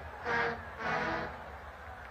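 A marching band in the stands playing two short held notes, the second about half a second after the first.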